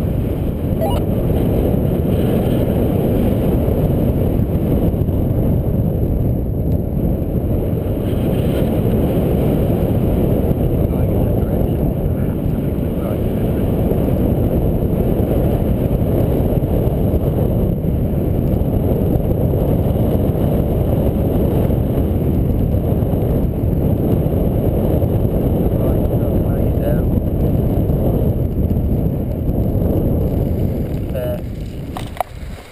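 Steady, loud wind noise on the microphone from the airflow of a paraglider in flight, a low rushing buffet with no break.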